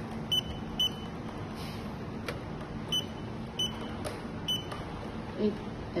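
Fibre optic fusion splicer's keypad beeping: about five short high beeps at uneven intervals as the X-align down key is pressed again and again, with a couple of sharp clicks in between.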